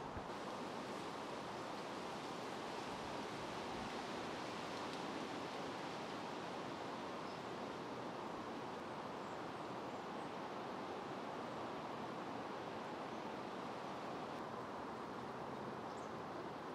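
Steady, even background hiss of outdoor ambience with no distinct events.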